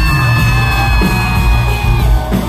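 Live pop-rock band playing loudly in a concert hall, with drums and bass underneath and a long high held note over them that cuts off near the end.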